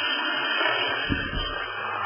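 Sound from a participant's phone coming over the video-call audio: a steady rushing noise that the listeners take for a toilet flushing.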